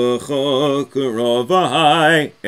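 A man chanting Hebrew prayers in the traditional liturgical chant (davening), holding wavering notes in short phrases with brief breaks between them.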